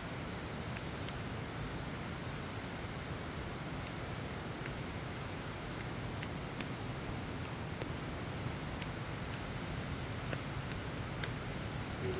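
Wood fire burning in a metal fire pit: irregular sharp crackles and pops, one or two a second, over a steady hiss.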